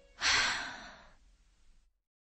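A single breathy exhale, like a sigh, on the recording, starting about a quarter second in and fading away over about a second.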